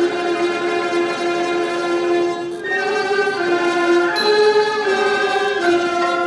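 Thai classical ensemble playing a slow melody led by bowed saw sam sai fiddles, in long held notes that step from pitch to pitch every second or so.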